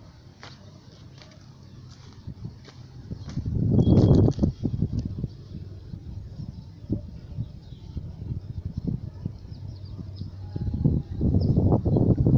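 Rustling and handling noise as the phone is moved among dry shrub branches, swelling loud about four seconds in and again near the end, with scattered light crackles between.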